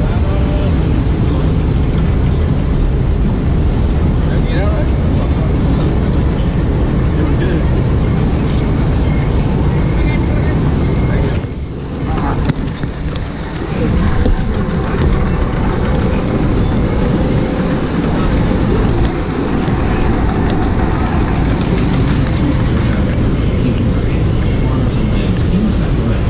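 Steady rushing noise of a river rapids ride's water channel with rumble on the camera microphone, and indistinct voices. The noise drops briefly about twelve seconds in, then comes back.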